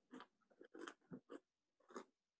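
Near silence, broken by about half a dozen faint, short noises in quick succession, like small rustles or mouth sounds picked up by an open call microphone.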